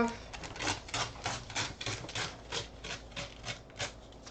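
A printed paper sheet being torn by hand along its edge, in a quick series of short rips.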